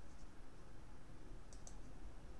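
Quiet room tone with a few faint, sharp clicks, two close together about one and a half seconds in, typical of a computer mouse clicking while the video is paused and scrubbed.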